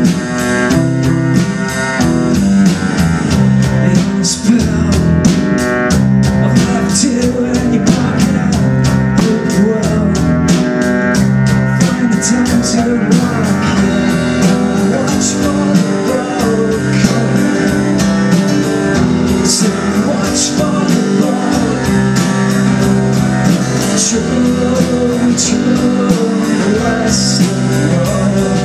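Live band playing a song: acoustic guitar, cello, electric guitar and drum kit with cymbals, at a steady beat.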